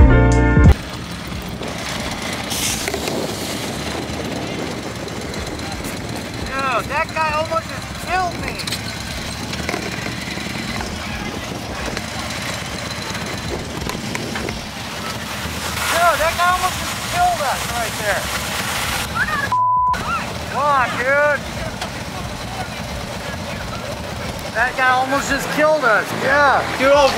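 Steady outdoor noise of wind on the microphone and passing traffic, with people talking indistinctly now and then. The backing music cuts off within the first second, and the sound drops out briefly about twenty seconds in.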